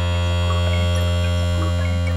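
Modular synthesizer music: a steady low drone under a layer of held high tones, with short blips popping in at different pitches every fraction of a second.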